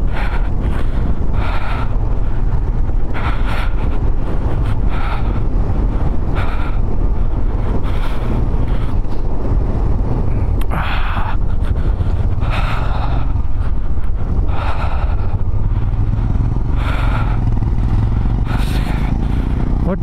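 Motorcycle engine running steadily while under way, with road and wind rush over it that swells every second or two.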